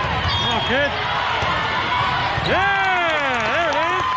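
A volleyball rally with ball thuds and short squeaks in the first second. From about two and a half seconds in, several high-pitched girls' voices shout together as the point ends.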